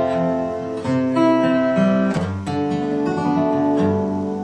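Acoustic guitar in DADGAD tuning playing chords, each struck and left to ring, with new chords struck about one second and two seconds in.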